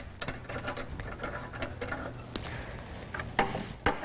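Small metallic clicks and ticks of a bathroom faucet's brass valve hardware being worked loose and handled by hand, with two sharper clicks near the end.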